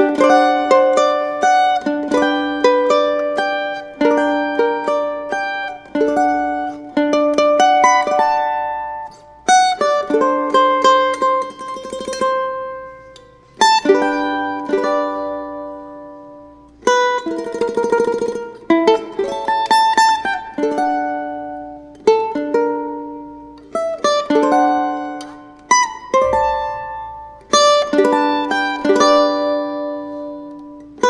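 Cavaquinho played solo in chord-melody style: plucked chords with the melody on top, notes ringing and dying away between phrases. Near the middle comes a denser stretch of fast strummed or tremolo chords.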